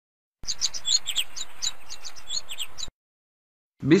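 Birdsong: a quick run of short, high chirps, several a second, starting about half a second in and cutting off abruptly a little before three seconds.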